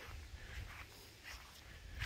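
Quiet outdoor garden ambience: a steady low rumble with a few faint, soft rustles, as of grass blades brushing past.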